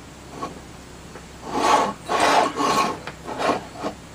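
A solar charge controller's case being slid and turned around on a countertop, giving several short scraping rubs starting about one and a half seconds in and lasting about two seconds.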